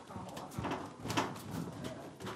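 Scattered short thuds and slaps in an MMA ring: the fighters' bare feet on the canvas and strikes landing, with the loudest knocks about half a second and a second in.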